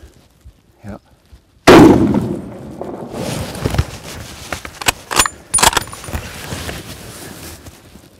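A single rifle shot a little under two seconds in, very loud, its report rolling away over several seconds. About three seconds later come a few sharp metallic clicks and rattles.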